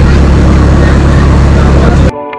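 Engine of a wooden river boat running steadily, heard from on board: a loud, low, even drone.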